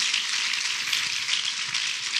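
A seated crowd clapping their hands, many claps blending into a steady, dense patter.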